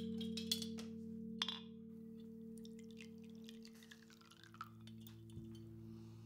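Ambient film score: a sustained low drone of several held tones, with scattered chime-like tinkles and clicks over it that thin out after about two seconds.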